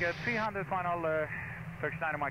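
Speech, from about half a second in narrowed as if over a radio or intercom, over a steady low cabin drone.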